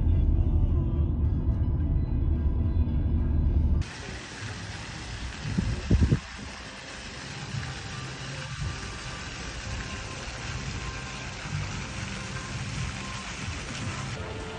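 Low road rumble of a car driving, heard inside the car, for the first few seconds; it stops abruptly at a cut. Quieter outdoor ambience follows, with brief loud low rumbles a couple of seconds after the cut, like wind buffeting the microphone. Background music plays under both parts.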